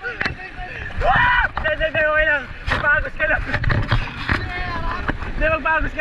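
Rafters yelling and whooping in drawn-out, wavering calls while shooting white-water rapids, over the steady rush and splash of the river against the inflatable raft.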